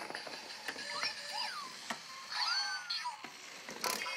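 Zhu Zhu Pets robotic toy hamsters making electronic squeaking chirps, two calls that glide up and down, about a second and a half apart, with a few sharp clicks of the plastic toys.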